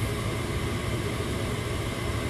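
Gas furnace draft inducer motor running steadily with a low hum and rush of air, shortly after start-up and before ignition. It draws about 1.2 amps, under its 1.45-amp rating: a healthy inducer.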